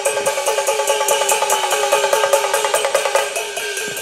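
Cantonese opera percussion section playing a fast, even beat of struck metal and wood strokes, about five a second, each stroke ringing briefly. The beat thins out near the end as a performer makes his entrance.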